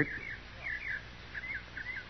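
Faint background of small birds chirping: short, quick chirps, a few each second, heard in an old radio-drama recording with a steady low hum underneath.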